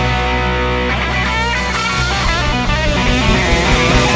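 Rock band playing an instrumental break. A chord is held over steady bass and drums, then about a second in a lead electric guitar plays bent, wavering notes over the band.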